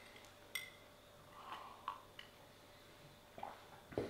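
Faint sounds of a person drinking coffee from a ceramic cup: a light clink of the cup about half a second in, then a few quiet sips and swallows, and a soft knock at the very end.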